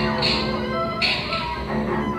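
Live free-improvised acoustic music, with bowed cello and double bass holding sustained tones. Two short bright bursts sound near the start and again about a second in.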